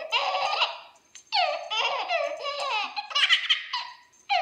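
A baby laughing in repeated high-pitched bursts of giggles, with a short break about a second in.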